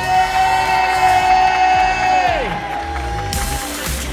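Loud entrance music with a long held voice, the announcer drawing out the end of the couple's name, which falls away about two and a half seconds in, over guests cheering.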